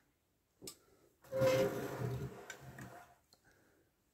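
A 1/50-scale diecast truck and ballast trailer turned around by hand on a wooden tabletop. A light click about half a second in, then its wheels rumbling on the wood for about two seconds, fading, with a couple of small clicks.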